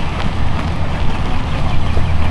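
Wind buffeting the microphone outdoors: a loud, steady low rumble, with a few faint taps on top.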